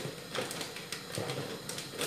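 Hands rummaging through a basket of packets: faint rustling with a few light clicks and knocks.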